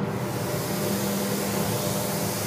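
Tablet film-coating machine running: a steady hum with an even airy hiss of its spray and air handling.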